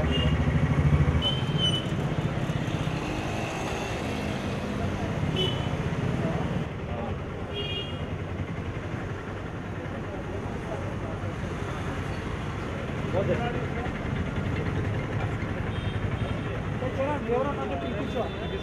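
Street traffic noise: vehicle engines running, with a few short horn toots and background voices.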